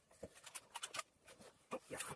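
Faint handling noise of a paper-covered cardboard box and its packaging: a quick run of small ticks, taps and rustles as the lid is set on and the box is picked up.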